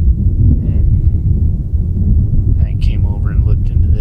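Wind buffeting the camera microphone: a loud, continuous low rumble, with a man's voice briefly speaking under it near the end.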